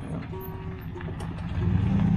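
Pickup truck towing a loaded car trailer drives in close, its engine running steadily and growing louder about one and a half seconds in as it nears.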